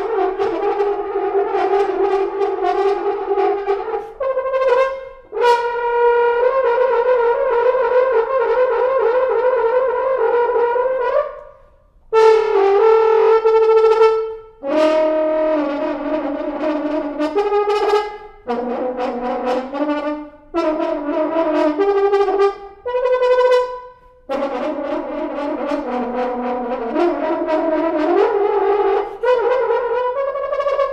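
Solo French horn playing unaccompanied: held notes in phrases of a few seconds, broken by short breaths. A long note in the first half wavers rapidly.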